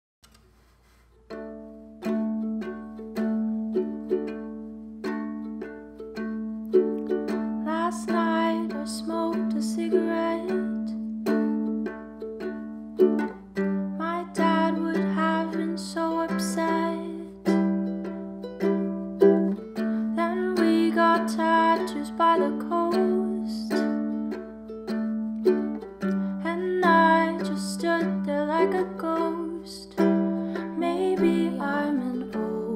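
Makala ukulele strummed in a steady rhythm of chords, starting about a second in. A woman's singing voice joins over it from about eight seconds in.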